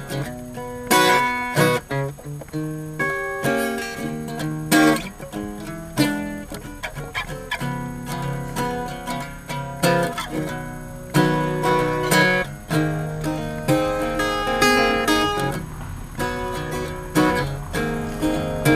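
Acoustic guitar played with picked single notes and chords, each note starting sharply and ringing on.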